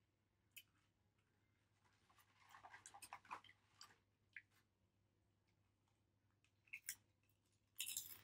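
Near silence: a faint steady low hum with scattered soft clicks and a brief crackling rustle a couple of seconds in.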